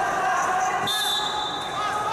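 Referee's whistle blown once: a single high, steady blast of about a second, starting about a second in, as the wrestlers are restarted. Voices of coaches and spectators shouting around it.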